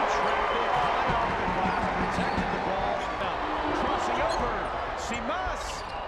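Basketball arena crowd noise that dies down over the first few seconds, with sneakers squeaking on the hardwood court and a basketball bouncing, the squeaks thickest near the end.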